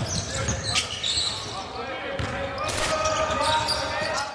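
Basketball-themed sound-design sting for the league's logo outro: a ball bouncing on a court and voices, with sharp strokes and a short rushing burst about three-quarters of the way in.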